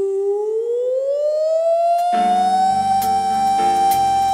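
A woman singing one long held note that slides slowly upward and then holds steady, with no vibrato. About two seconds in, the band's chords and bass come in underneath.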